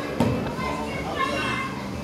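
Children's voices and chatter, with a single sharp thump shortly after the start.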